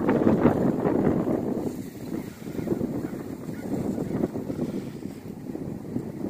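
Wind buffeting the microphone: a rough, rumbling rush that eases off about two seconds in.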